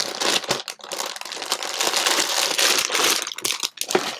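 Clear plastic bag crinkling continuously as hands handle and open it.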